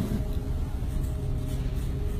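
Steady low rumble with a faint constant hum, with no distinct events.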